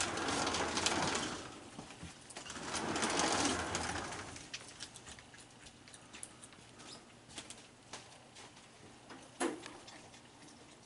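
Raccoons feeding at a plastic kiddie pool on a wooden deck: many small clicks and scrapes of claws and food, with two longer, louder noisy stretches in the first four seconds and a sharper knock about nine seconds in.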